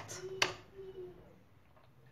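A single sharp click about half a second in, with a faint brief hum around it, then near silence: room tone. No blender motor is heard running.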